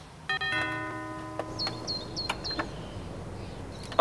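Doorbell chime ringing a few notes that start one after another and fade out, followed by four short high chirps.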